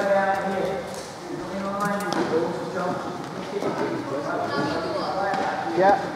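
People talking, the words indistinct, in short stretches throughout.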